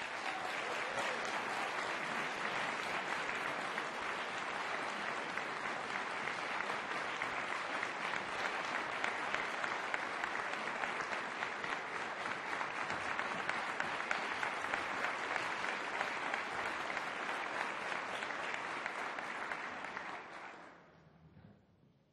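Audience applauding steadily as the performers come on stage and bow, dying away near the end.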